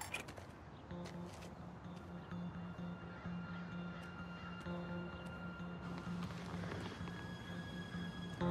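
Quiet background score: a low repeating pulse that comes in about a second in, under long held higher tones.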